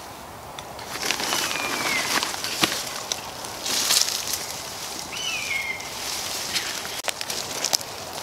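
Tarp and bedding fabric being handled and shifted: irregular rustling with scattered clicks, loudest about four seconds in. Twice, a bird gives a short falling whistled call, once about two seconds in and once about five seconds in.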